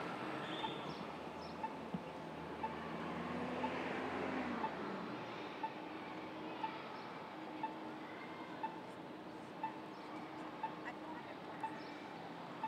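Pedestrian crossing signal's locator tone ticking about once a second over steady city traffic noise, with a vehicle engine passing and fading in the first few seconds.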